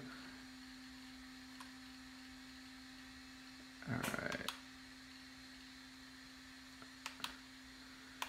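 Faint steady electrical hum, with two or three light clicks near the end from the buttons and dial of an RC transmitter being worked. A short louder sound comes about four seconds in.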